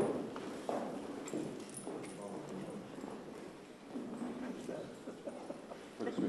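Indistinct murmur of voices and light chatter in a large room, with footsteps on a hard floor.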